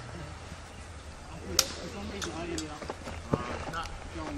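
Training longswords striking each other in a sparring exchange: two sharp clacks, one about a second and a half in and one near the end, with a few lighter clicks between them.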